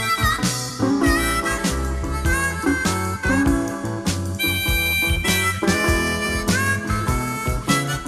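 Acoustic blues music: a harmonica plays a lead line with bent notes over guitar accompaniment.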